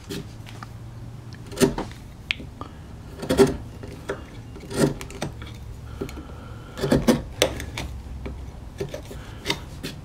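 Narrow hand chisel scraping and levering waste out of a mortise in oak: irregular scratchy scrapes with a few sharp cracks and clicks as chips break free, and chips brushed off the wood.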